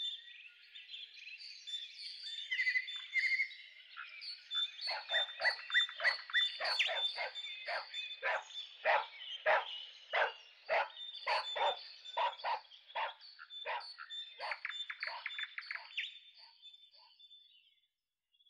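Nature ambience of repeated croaking calls, about two a second, over a thin, steady, high chirping tone. A few high bird-like trills come first, and the calls fade out near the end.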